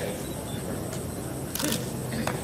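Camera shutter clicking in a quick burst about one and a half seconds in, over a low murmur of voices.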